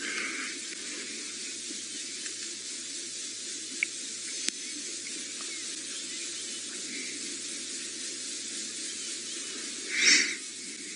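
Steady, even hiss of open-air bush ambience with faint ticks, and a short, louder breathy rustle right at the end.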